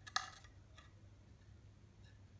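A short metallic clink of a small steel part or tool being knocked or set down, ringing briefly, with a fainter second clink just under a second later.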